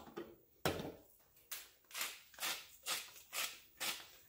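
Salt being shaken onto green beans in a pot: a knock about half a second in, then about six short shakes, roughly two a second.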